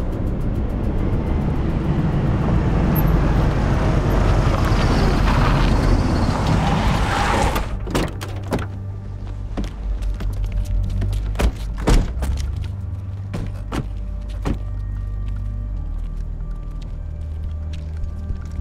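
Film soundtrack: a loud, noisy swell builds for the first seven seconds or so and cuts off suddenly. A low, steady music drone follows, with scattered sharp knocks and clicks, the strongest about four seconds after the cut-off.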